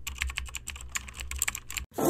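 Computer keyboard typing: a quick, irregular run of key clicks over a low hum, stopping abruptly just before the end.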